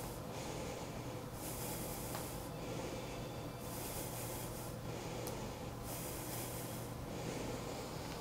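A woman's audible breathing through the nose, picked up close on a clip-on microphone while she holds a one-legged yoga balance: about five slow breaths, each about a second long, over a faint steady hum.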